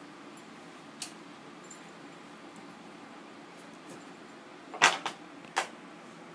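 Quiet room with a small click about a second in, then a loud short knock near the end followed by a second sharp click.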